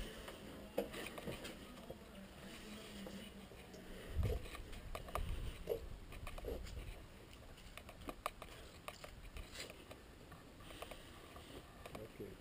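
A shotgun being handled with a camera mounted on it: scattered light clicks, rubs and knocks, with a dull low thump about four seconds in.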